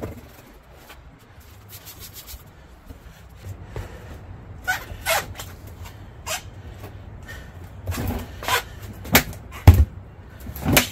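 Scattered thumps and knocks of a rubber tire and wheel rim being forced together underfoot as the tire bead is pushed down over the rim, a few soft ones around the middle and the loudest, deepest thump near the end.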